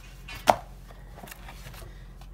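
Items and papers being handled in a box, with one sharp knock about half a second in, as of something hard set down or bumped against the box.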